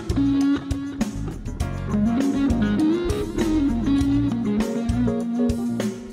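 Live band playing an instrumental passage with no singing: an electric guitar carries a melody that bends and holds notes over the band, with a steady beat.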